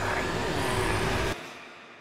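Horror-style end-card sound effect: a dense rumbling drone with sliding, wavering tones over it. It stops abruptly about a second and a half in and dies away in a fading tail.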